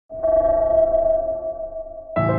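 A single electronic ping tone that starts abruptly and slowly fades out over about two seconds.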